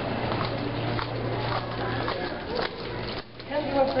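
Indistinct background chatter of several students' voices, with a steady low hum underneath and a few faint clicks.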